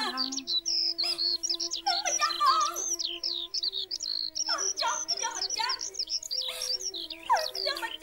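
Dense bird chirping, many short quick calls, laid over a held low musical note that steps slowly from pitch to pitch.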